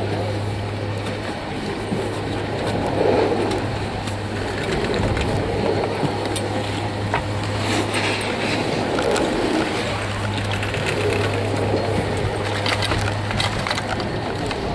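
Busy chairlift line: a steady low hum from the high-speed chairlift's terminal machinery under a murmur of skiers and scattered clicks and clatter of skis and poles. The hum fades for a few seconds in the middle, then returns.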